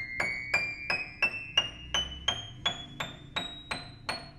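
Kafmann K121 upright piano played one key at a time, as a check of every key on the keyboard. About three single notes a second climb step by step through the high treble, and the last note, at the very top of the keyboard, rings on.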